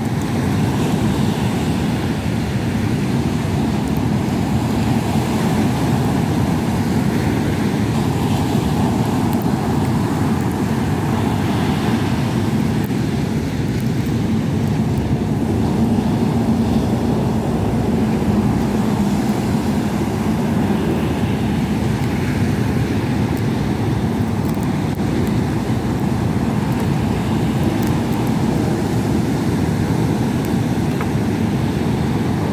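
Steady roar of wind and rough surf on an open beach, with wind rushing on the microphone.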